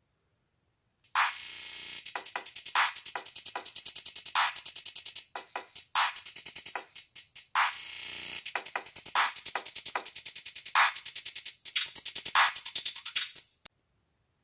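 Beat-making drum-pad app on a smartphone playing an electronic drum-machine beat: fast rolls of rapid, crisp hits with heavier strikes among them. It starts about a second in and stops just before the end.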